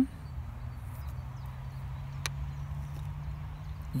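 Outdoor background: a steady low hum over a low rumble, with a single sharp click about two seconds in.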